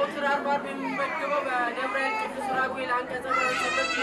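Speech: a voice talking in Amharic to a seated group in a hall, with chatter around it.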